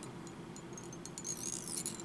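Quiet handling at a fly-tying vise: faint scattered ticks and thin squeaks as tying thread is wrapped over pheasant-tail fibres on a small nymph hook, over a low room hiss.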